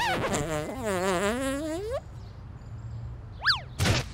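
Cartoon-style comic sound effects. A springy, wobbling tone dips and then rises for about two seconds. Then come a quick rising-and-falling whistle and a short sharp hit near the end.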